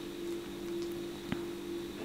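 A steady low hum, with one faint click partway through as the metal and glass charms on a bracelet knock together while it is turned in the fingers.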